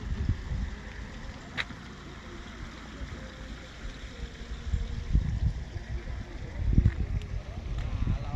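Wind buffeting the microphone in irregular low rumbling gusts, strongest about five and seven seconds in, with one sharp click early on.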